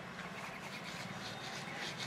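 Hands rubbing and crushing fresh rose petals with granulated sugar in a bowl: a faint, steady, gritty rustle.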